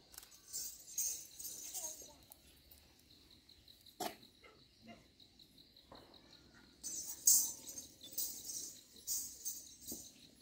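Metallic jingling like small bells or a tambourine being shaken, in two spells: from about half a second to two seconds in, then again from about seven seconds to the end, in uneven shakes. A single sharp sound cuts in about four seconds in.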